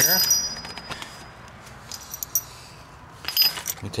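A few light metallic clinks from small shock-mount hardware, steel washers and a nut, being handled, over a low steady background hiss. The clinks are sparse at first and bunch together near the end.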